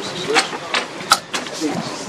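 A few sharp clicks and knocks from hands working on a jet ski, amid low talk.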